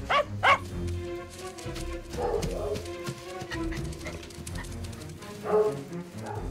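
A dog barking: two quick, sharp barks right at the start, then more barks later, over background film music.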